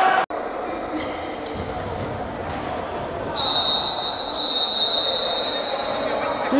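Referee's whistle blown in one long steady blast of about two and a half seconds, starting a little past halfway, signalling the end of the first half. It sounds over the general noise of a sports hall.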